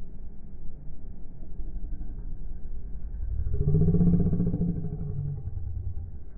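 Low, steady traffic and engine rumble. About three and a half seconds in, a passing vehicle's engine swells, then fades away over the next two seconds.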